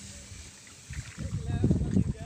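A small boat being pushed through floating water hyacinth: water sloshing and plants brushing against the hull. An irregular low rumbling and knocking starts about a second in.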